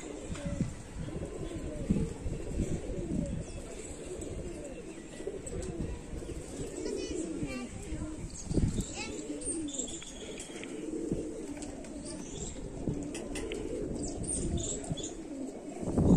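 A loft full of domestic pigeons cooing: many low, overlapping coos that go on throughout.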